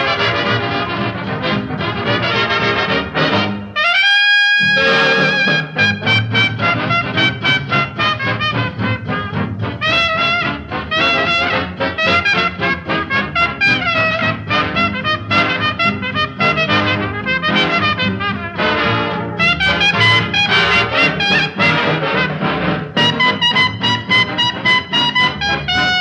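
Brass-band swing music led by trumpets and trombones, with a rising brass glide about four seconds in.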